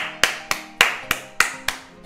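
A person clapping, about seven evenly spaced claps at roughly three a second, each trailing off briefly, over faint steady musical tones.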